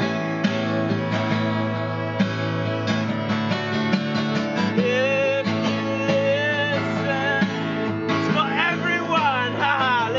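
Acoustic guitar strummed steadily, with a bowed violin playing long, wavering notes over it, more prominent in the second half.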